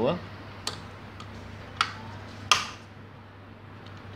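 A few short, sharp clicks of metal against plastic as a small metal part of a Brother overlocker is stowed in the storage tray of the machine's open front cover. There are about four clicks, and the loudest two fall around the middle.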